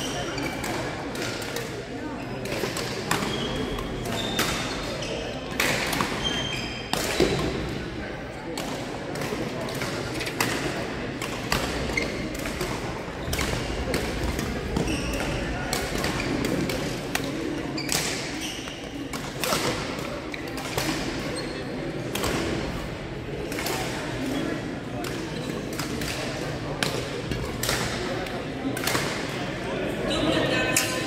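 Badminton rackets striking a shuttlecock in a rally: sharp, irregular cracks echoing in a large gym hall, with brief high squeaks of shoes on the court floor and a background murmur of voices.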